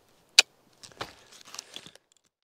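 A single sharp click about half a second in, followed by a run of quieter clicks and rustles.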